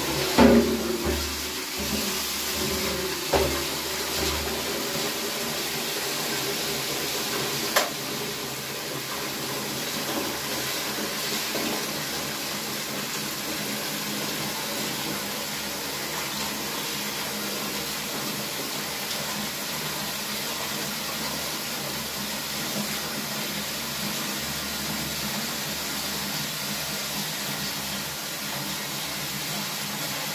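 Tap water running steadily into a basin or container, with a few knocks in the first eight seconds.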